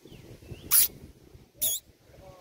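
Two short, shrill squeals from a monkey, a little under a second apart, the second wavering in pitch.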